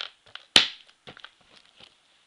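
Plastic shrink-wrap on a DVD case crinkling as a hand grips and moves it: one loud rustle about half a second in, then small crackles and clicks.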